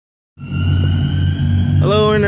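Road traffic noise: a steady low rumble of passing vehicles with a faint, steady high tone above it, starting a moment in after a brief silence. A man's voice begins near the end.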